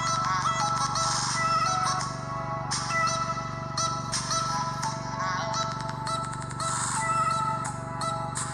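Background music: a melodic track with a wavering, vocal-like lead line over held tones and repeated percussive strokes.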